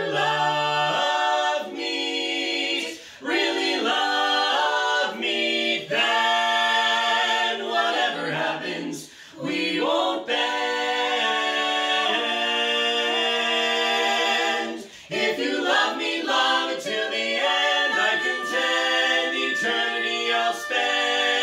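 Mixed-voice quartet of two women and two men singing a comic song a cappella in close four-part barbershop-style harmony, with lines like "If you love meat" and "We won't bend." Chords are held and shift together, broken by three short pauses between phrases.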